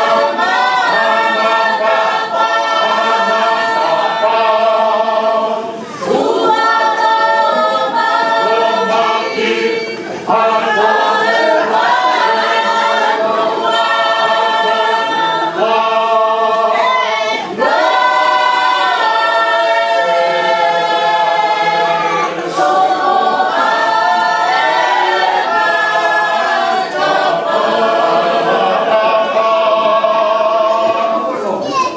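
Church choir singing a hymn a cappella in Tongan polotu style, in long held phrases with brief breaks between them.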